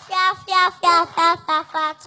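A young girl's voice through a microphone, chanting a quick run of short, held syllables in a sing-song.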